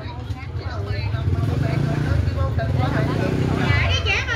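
Motor scooter engine running as it rides past close by, its low rumble swelling and then falling away near the end, under a chatter of people's voices.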